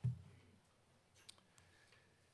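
Handling noise at a lectern microphone: a low bump right at the start, then two faint, sharp clicks.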